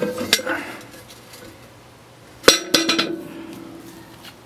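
Steel parts of an offset smoker being knocked or handled: a metal clink just after the start, then a louder metal knock about two and a half seconds in that leaves the steel ringing with a steady tone for over a second.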